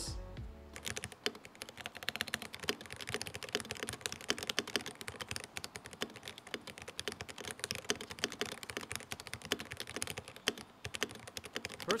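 Fast two-handed typing on a QEEKE KR-081 gasket-mount 75% mechanical keyboard with Gateron switches: a dense, rapid run of quiet key clacks, with a brief pause near the end.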